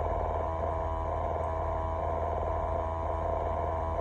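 Steady, even machine hum inside a truck cab, with a low drone and a fainter steady tone above it.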